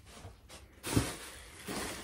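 Handling noise from a cardboard shipping box: a single dull knock about a second in, then faint rustling of crumpled packing paper being pulled out.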